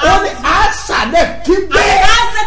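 A man's loud, animated voice, its pitch swinging up and down and rising sharply near the end.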